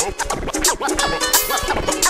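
Hip hop beat with DJ turntable scratching: quick back-and-forth record scratches over the instrumental.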